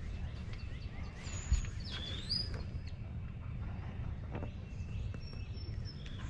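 Outdoor birdsong, a few short whistled chirps and gliding notes, over a steady low rumble, with a soft thump about a second and a half in.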